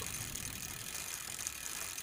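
Faint rapid ratcheting ticks over a steady hiss.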